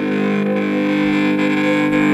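Recorded rock track playing: a distorted electric guitar chord held and ringing steadily.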